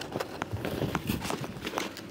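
Handling noise from packing a soft padded guitar gig bag: a string of light, irregular clicks and taps with fabric rustling as a small item is pushed into one of the bag's pockets.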